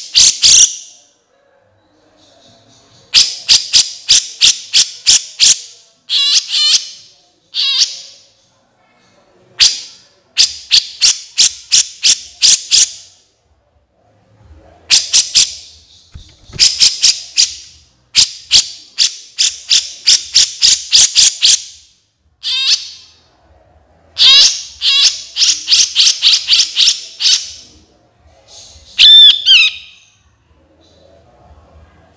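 Recorded bird calls from a magpie-robin training track: bursts of rapid, sharp repeated high notes, each burst one to three seconds long with short pauses between, and a few brief warbling phrases that sweep in pitch near the middle and just before the end.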